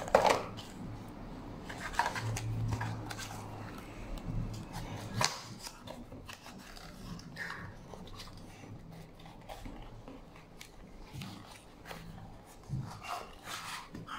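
Cardboard box and plastic packaging being handled and opened: scattered light clicks, knocks and rustles, with one sharper click about five seconds in, as a selfie-stick tripod is taken out.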